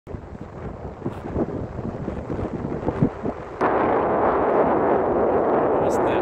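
Wind buffeting the microphone: irregular low thumps over a rush of noise, jumping suddenly to a louder, steady roar of wind noise about three and a half seconds in.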